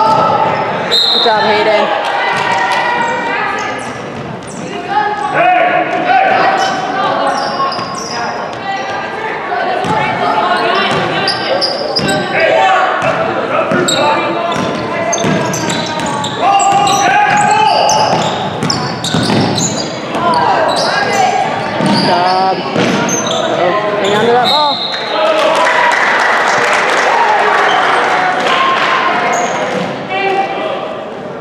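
Basketball game in an echoing gym: a ball bouncing on the hardwood court among shouting voices of players and spectators, with a stretch of loud crowd noise near the end.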